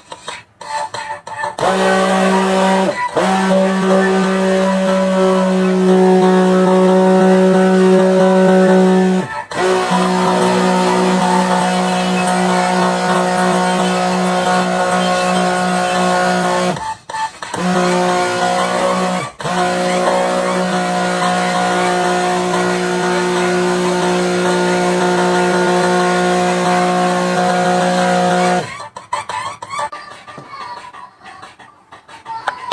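Hand-held immersion (stick) blender running in a tall beaker of cream mixture: a loud, steady motor hum that starts about two seconds in, cuts out briefly four times, and stops near the end.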